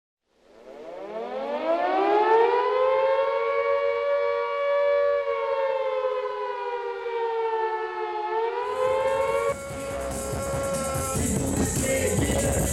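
A siren wail rises in pitch over the first two seconds, holds steady with a slight sag, then rises again. About nine seconds in, a music track with a beat and hi-hats comes in over it.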